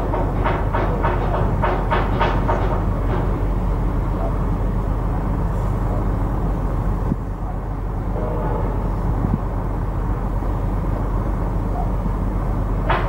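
A steady low rumble throughout. Over the first three seconds it is joined by a quick, even run of sharp strikes, several a second.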